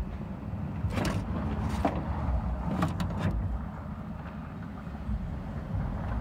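A few sharp clicks and knocks, about a second in, near two seconds and around three seconds, over a steady low rumble, from handling inside a car door's window mechanism.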